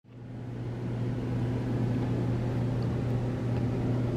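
Steady low machine hum with a light hiss, fading in over the first second and then holding level.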